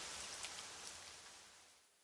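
Faint rain with a few scattered drop ticks, fading out and gone about one and a half seconds in.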